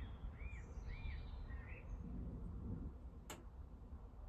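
Low steady hum from a Zanussi front-loading washing machine while its drum pauses between tumbles in the wash. Four short rising-and-falling chirps, about half a second apart, sound like a small bird in the first two seconds, and a single sharp click comes about three seconds in.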